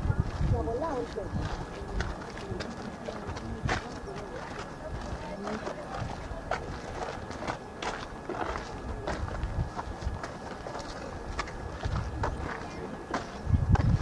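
Indistinct background voices with scattered clicks and taps, and low buffeting on the microphone at the start and again near the end.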